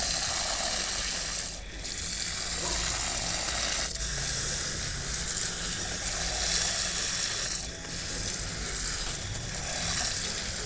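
Stream of water from a pistol-grip garden hose nozzle pouring into the soil of potted trees: a steady hiss that dips briefly about three times.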